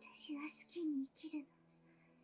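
A woman's voice speaking Japanese anime dialogue for about a second and a half, then a quiet stretch with faint steady background tones.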